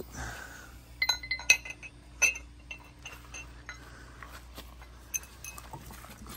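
Crystal glassware clinking as pieces are handled and set down: a scatter of sharp, ringing clinks, the loudest between one and two and a half seconds in.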